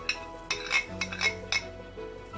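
A metal spoon clinking and scraping against the metal pot several times as it works lumps of homemade butter being melted down for ghee, over steady background music.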